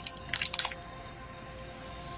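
Plastic anti-static bag crinkling in a few short rustles within the first second, as a heavy graphics card is turned over on it.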